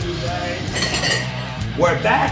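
Metal dumbbells clinking as they are set down, heard over background music.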